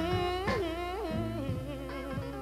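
Electric blues band playing the song's closing bars as it fades out, a lead line bending up and down in pitch over the bass.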